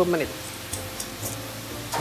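Potato strips deep-frying in medium-hot oil (about 150 °C) for the first fry of a double fry: a low sizzle with a few crackles near the middle.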